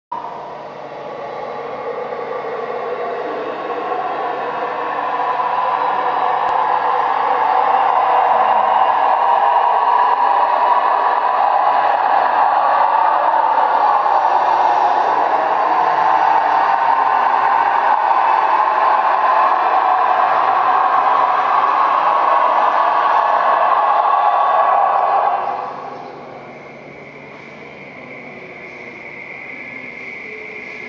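Electronic noise texture played from a laptop over loudspeakers: a dense band of noise that swells over the first several seconds, holds steady, then drops away suddenly about 25 seconds in, leaving a quieter texture with a thin high tone.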